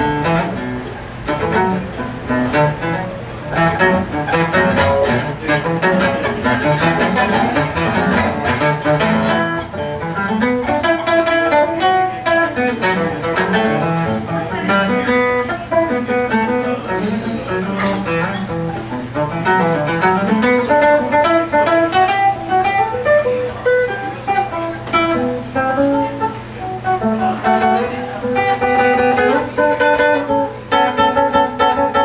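Nylon-string classical guitar played fingerstyle, with fast runs of plucked notes climbing and falling in pitch.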